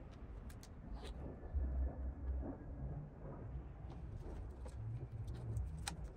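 Red liner tape being peeled off the 3M adhesive of a carbon-fibre headlight cover: a few faint clicks, the sharpest near the end, over low rumbling handling noise.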